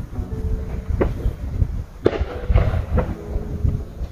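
Distant fireworks going off: several sudden bangs spaced about a second apart over a low rumble.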